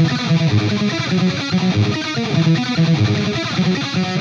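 Distorted Jackson electric guitar tremolo-picking a thrash metal riff in A minor, moving between fourth, fifth and augmented-fifth shapes on the D and G strings, the pitch changing about every half second.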